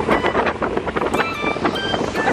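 Small open motorboat under way: its engine and the rush of wind buffeting the microphone make a loud, steady noise, with a few short held high tones over it.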